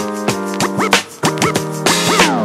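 Background music with DJ record-scratch effects: short pitch sweeps that rise and fall, repeating over sustained synth chords.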